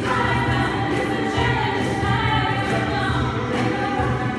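Mixed vocal ensemble of men and women singing together, with a strong low bass part pulsing underneath.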